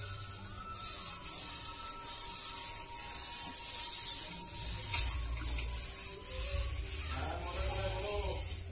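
A bare hand rubbing and smearing wet clay paste over the outside of a stainless-steel pot, making a rasping hiss in repeated strokes, about one or two a second.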